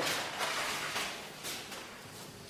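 Heavy 70 lb kraft paper rustling softly as it is handled and smoothed flat on a table, with a few light touches, fading toward the end.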